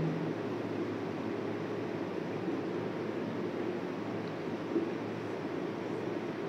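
Steady room hiss with faint strokes of a marker writing on a whiteboard.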